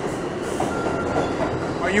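Steady noise of a subway train in an underground station, with a faint brief steady tone about a second in.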